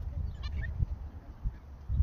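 Wind buffeting the microphone in a gusty low rumble, with a brief run of faint high bird chirps about half a second in.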